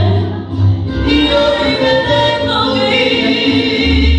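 A song playing: voices singing long held notes over instrumental backing with a steady bass.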